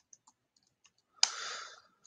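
A few light keystrokes on a computer keyboard in the first second, then, just past a second in, a short rush of noise lasting about half a second that is the loudest sound here.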